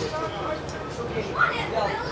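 Indistinct voices calling out across an outdoor football pitch, with a louder shout about one and a half seconds in.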